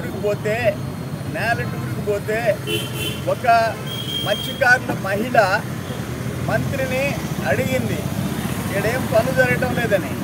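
A man speaking Telugu in a continuous, forceful delivery into close microphones, over a steady low background rumble.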